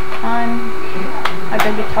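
Two sharp plastic clicks, a third of a second apart, from a toy airsoft shotgun being handled and clipped, over brief hesitant vocal sounds and a steady low hum.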